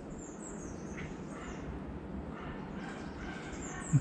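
Birds singing with thin, high chirps, and a small dog barking faintly in the distance.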